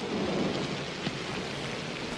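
Steady rain falling, an even hiss, with one faint tick about a second in.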